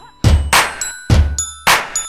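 Instrumental dance-pop music: three heavy stabs of bass and bright ringing synth, each dying away into a short gap before the next.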